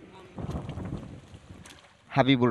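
Muddy water sloshing in a flooded rice paddy as seedlings are pushed into the mud by hand. It is a noisy rush that swells about half a second in and fades away over the next second.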